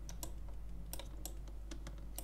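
Light, irregular clicks from a computer keyboard and mouse, about eight in two seconds, over a faint steady low hum.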